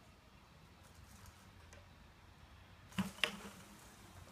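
Two sharp knocks a quarter second apart about three seconds in, from a bucket on a long pole being jolted up against the tree branch to shake a honey bee swarm into it. The rest is faint and steady.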